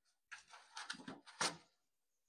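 Brief handling noise: a few soft rustles and scrapes, then a sharper click about one and a half seconds in, as the grinding wheel is picked up by hand.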